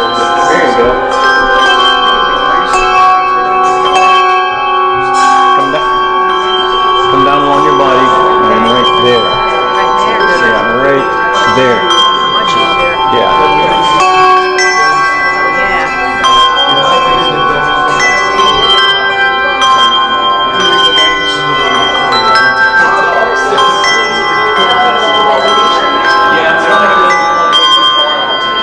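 Many tuned brass handbells rung at once by a group of ringers, each on their own time, so that many ringing tones start at different moments and overlap in a continuous wash. Voices chatter underneath.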